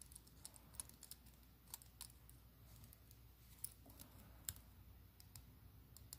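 Faint, irregular small clicks of jewellery pliers working a metal jump ring among glass beads, a couple of them a little louder in the second half.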